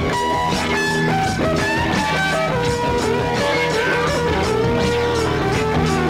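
Instrumental late-1960s psychedelic blues-rock recording: an electric lead guitar holds and bends notes over bass and drums.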